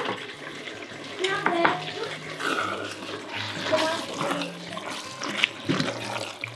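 A wooden spatula stirring a thick pot of chili with kidney beans and tomato, making uneven wet sloshing stirring sounds.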